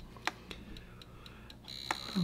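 KWD-808 II electroacupuncture unit's built-in signal speaker ticking at a high pitch about four times a second, then switching to a steady high tone near the end as the mixed (dense-disperse) mode changes to its second frequency. A couple of light knocks from the unit being handled.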